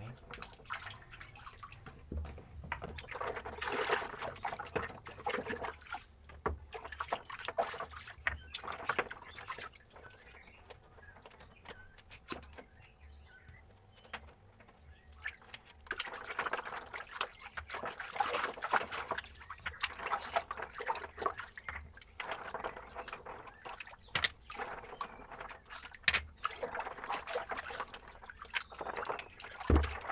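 A hand sloshing and splashing through the water of a small, shallow stone-lined pond, stirring up the dirty water to clean it out. The splashing comes in irregular bursts, dying down for several seconds in the middle before picking up again.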